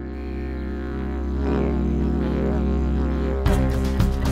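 Background music built on a steady didgeridoo drone that slowly grows louder, with sharp percussion strikes coming in about three and a half seconds in.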